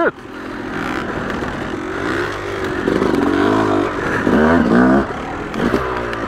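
Yamaha YZ250's single-cylinder two-stroke engine, modified for bottom-end power, running under load with its pitch rising and falling as the throttle is rolled on and off, with the loudest revs around two and four to five seconds in. Some scraping and clattering is heard along with it.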